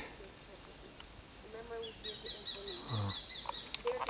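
Steady high-pitched drone of insects, with a rapid, evenly repeated trill of high chirps lasting under two seconds from about halfway through.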